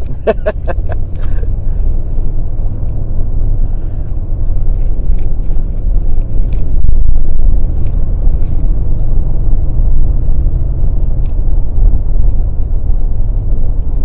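Steady low road rumble of a vehicle being driven, heard from inside the cabin: engine and tyre noise holding an even level throughout.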